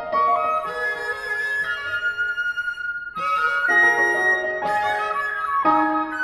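Flute, cello and piano trio playing contemporary classical chamber music, with long held flute notes over the other instruments. The sound eases into a brief lull about three seconds in, then new notes enter together.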